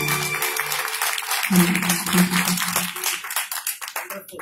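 Audience applauding as a song ends, the last held note of the music fading out in the first half-second; the clapping thins out toward the end.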